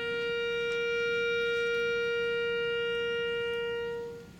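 Youth concert band's wind instruments holding one long note, swelling slightly and tapering off at the end.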